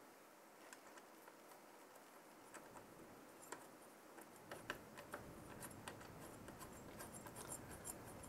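Near silence with faint, scattered small clicks that get more frequent after a couple of seconds: the metal crossbar hardware of a CPU cooler mounting kit being finger-tightened by hand.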